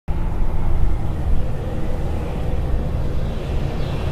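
A low, steady rumble that starts abruptly at the very beginning, with its weight in the deep bass and a faint held hum above it.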